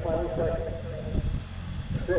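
Indistinct voices of people talking among the waiting spectators, over a steady low rumble.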